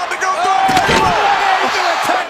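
A body slammed down onto a wrestling ring mat about a second in, a heavy thud over loud arena crowd noise.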